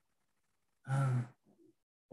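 A man's voice giving one brief hesitant "uh" about a second in, lasting about half a second.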